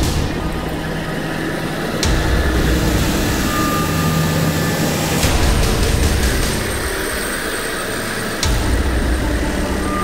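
Diesel engines of heavy track-preparation machinery, a motor grader and a sheepsfoot compactor, running steadily as they work the dirt. The sound changes abruptly twice, about two seconds in and again past eight seconds, where the shots change.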